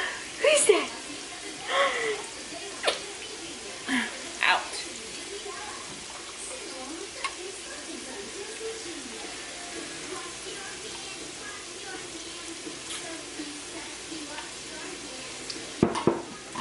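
Potatoes frying in a pan on the stove: a steady sizzle with scattered faint crackles. In the first few seconds there are a few short voice sounds, louder than the frying.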